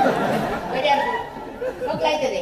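Speech only: voices talking over one another, with no other sound standing out.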